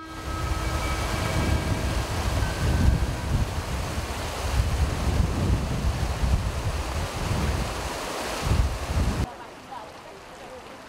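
Water rushing out through a glacial lake's outlet canal and sluice, with wind buffeting the microphone in gusts. It cuts off abruptly about a second before the end, leaving a much quieter background.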